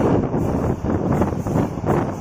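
Passenger express train running at speed, heard from an open coach door: a steady noise of the wheels on the rails, with wind buffeting the microphone. There is a brief louder burst just before the end.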